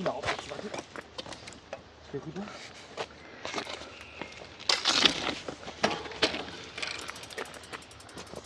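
Knocks, clicks and rattles of a bicycle being handled and lifted over a fallen tree trunk, with a louder rustle of leafy branches about five seconds in and faint low voices.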